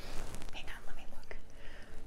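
Soft, breathy whispering with no voiced pitch, with a few faint clicks of the wallet being handled.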